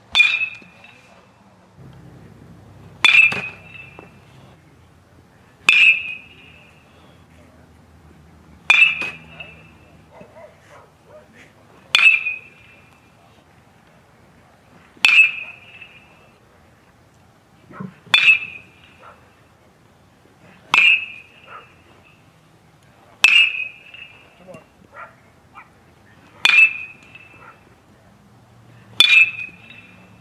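Metal baseball bat striking pitched balls in batting practice: a sharp ringing ping about every three seconds, eleven hits in all.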